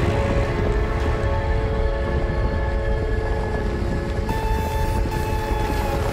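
A deep, steady rumble with sustained held music tones above it, shifting to a new chord about four seconds in: a dramatic film score over a low rumbling effect.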